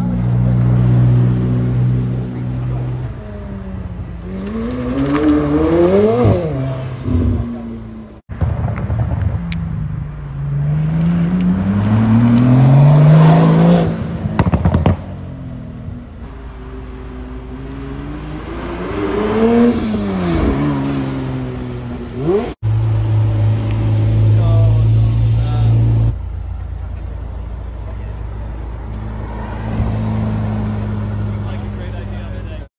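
Supercar engines at low speed: a steady idle, then revs rising and falling in pitch several times. The clip breaks off suddenly twice, and ends on another steady idle.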